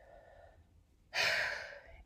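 A woman's audible breath, a breathy hiss that comes suddenly about a second in and fades over most of a second, after a quiet first second.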